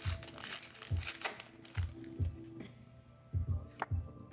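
Foil booster-pack wrapper crinkling as it is torn open, mostly in the first second or so, over background music with a steady beat.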